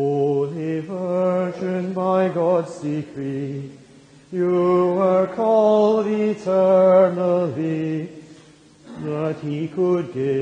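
Singing of a Marian hymn, with long held, sliding notes in phrases that break briefly about four seconds in and again near the end.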